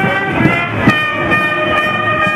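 Marching brass band holding a sustained chord, with two sharp drum strikes about half a second and a second in.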